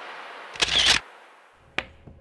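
Camera shutter sound effect: a swelling hiss, a loud shutter snap about half a second in, and a short sharp click near the end.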